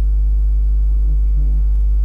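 Loud, steady low mains hum.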